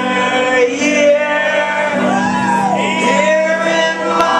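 Live rock band playing amplified electric guitars with sustained chords, under a male voice singing and shouting.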